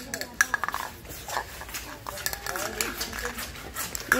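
Indistinct talking, quieter than the conversation around it, with scattered light clicks and clinks, the sharpest about half a second in.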